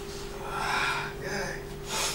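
A person gasping: a long breathy gasp about half a second in, then a shorter breath, with a brief sharp noise at the very end. A steady low hum runs underneath.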